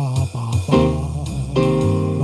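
Roland GO:PIANO digital keyboard playing a slow blues, with chords over low bass notes. A new chord is struck near the middle, and a low bass note comes in just after.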